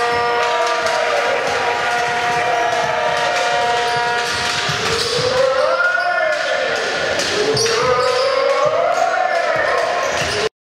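A basketball being dribbled on a hardwood court during play, the bounces standing out over the arena sound. Held steady tones fill the first half, then long tones rise and fall from about halfway on.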